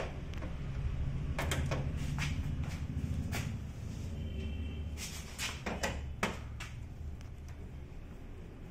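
Irregular clicks and knocks of hard plastic and metal, a dozen or so in loose groups, as the panels and screws of a Canon iR2525 photocopier are worked with a screwdriver. A steady low hum lies underneath.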